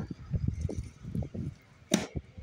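Hands handling a hardcover book and pulling its cover off: soft irregular rustling and bumps, with one sharp click near the end.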